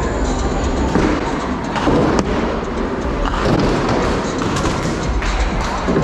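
Music playing over a busy bowling-alley din, with a bowling ball rolling down the lane and several sharp knocks and thuds, the clearest about two seconds in.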